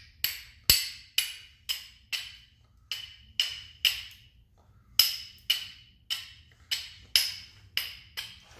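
Steel striker scraping down a piece of flint, struck over and over about twice a second: each stroke a sharp click with a short metallic ring. Near the middle the strikes pause for about a second.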